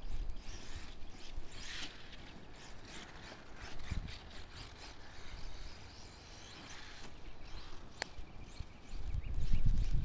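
HPI Savage XS Flux 4WD mini monster truck running on a 2S LiPo, its brushless motor and gear drivetrain whirring and rattling as it drives across grass at a distance. There is a sharp click about eight seconds in, and wind rumbles on the microphone near the end.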